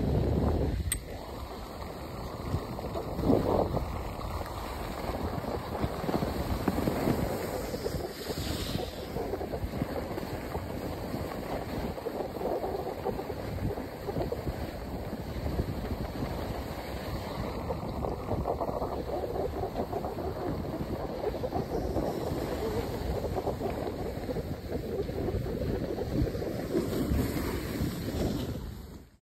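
Steady rush of wind on the microphone mixed with skis sliding over groomed snow during a downhill ski run, with a brief louder gust about three seconds in.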